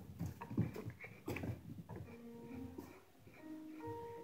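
Flat #2 carving gouge slicing sideways across end grain of a wooden totem: several short, sharp paring cuts in the first second and a half, quieter after.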